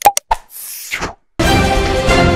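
A few short click and pop sound effects and a brief whoosh, then theme music starts about one and a half seconds in.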